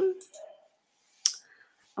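A single short, sharp click about a second in, in an otherwise near-silent room, after a voice trails off at the start.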